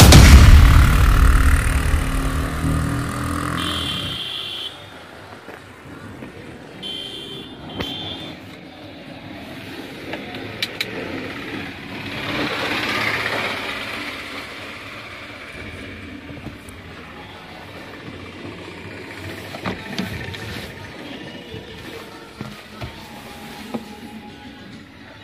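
Music fading out over the first few seconds, then a quiet Toyota Corolla 1.8E cabin with the car at a standstill and the engine idling, under low street noise. About halfway through, a swell of noise rises and falls.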